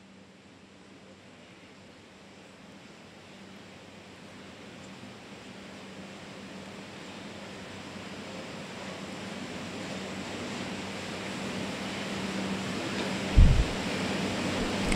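Steady background hiss through the mosque's microphone system that slowly grows louder, with a faint steady electrical hum under it. Near the end comes one short low thump as the preacher stands back up at the microphones.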